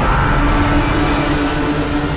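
Dramatic background score from a TV serial: a sudden swell into a low rumbling drone with a single note held steady over it.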